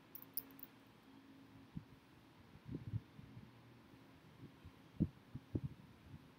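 Faint computer keyboard keystrokes: a few soft, dull taps, grouped near the middle and near the end, over a low steady hum.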